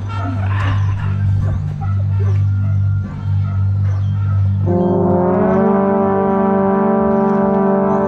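Drum corps brass line with a bass trombone at the microphone: a low steady drone for the first half, then about halfway through the horns come in together on a loud held chord that bends slightly up in pitch as it settles.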